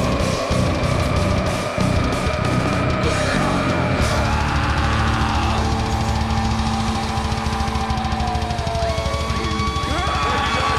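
Live heavy metal band playing loud, with distorted electric guitars, bass and drum kit. About four seconds in, the guitars settle into a held, ringing chord over rapid drumming.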